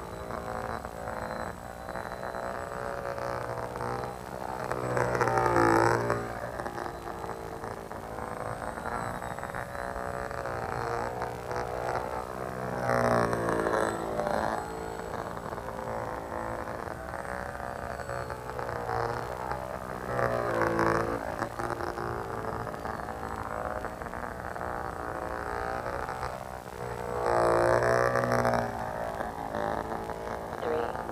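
Electric motor and propeller of a small foam RC biplane droning steadily in flight, swelling louder and bending in pitch about every seven seconds as the plane passes close by.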